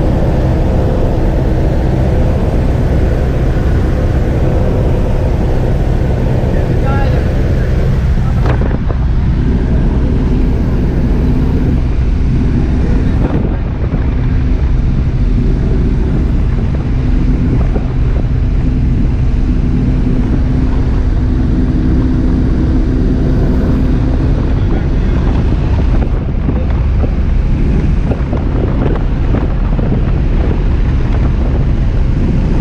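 Small high-wing propeller airplane's engine and propeller droning steadily, heard from inside the cabin in flight, with wind noise on the microphone. The drone's tones shift suddenly about eight and a half seconds in.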